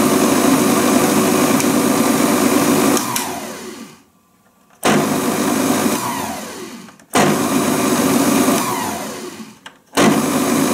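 Moulinex Masterchef 750 Duotronic food processor's 500 W motor running with an empty bowl. It is switched off about three seconds in and winds down with a falling whine to near silence, then starts again. This happens twice more, each run coasting down before the motor is started up again near the end.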